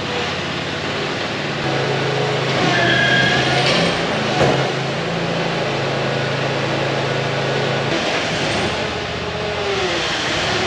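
A motor vehicle engine running steadily, brought up to a slightly higher speed about two seconds in and let back down near eight seconds, with a single sharp knock about four and a half seconds in.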